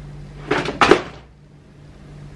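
Handling noise from a wet sheet face mask being unfolded and lifted: two short, hissy bursts about half a second and one second in.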